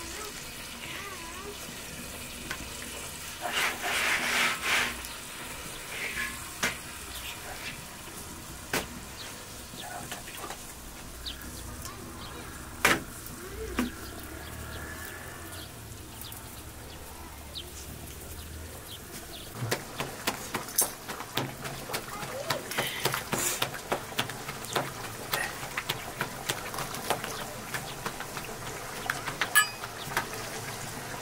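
Flatbread cooking on a dry iron griddle over a wood fire: a steady low sizzle and crackle, with scattered small clicks and knocks as the bread is handled.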